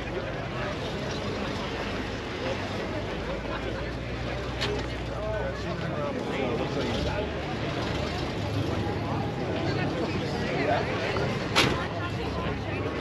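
Indistinct voices of people chatting in the background over a low steady rumble, with a sharp click near the end.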